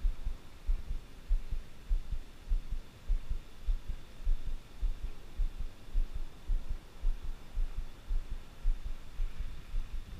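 Low muffled thumps about twice a second, the cadence of a Shimano Scorpion BFS baitcasting reel being cranked to retrieve a lure, carried as handling noise into the body-worn camera, over a faint steady hiss.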